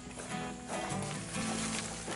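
Acoustic guitar being strummed, chords ringing on between a few strokes.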